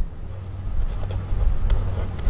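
A low, steady background rumble in the recording, with a couple of faint light taps.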